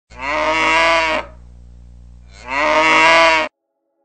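A cow mooing twice, two long calls of about a second each with a short pause between; the second is cut off abruptly.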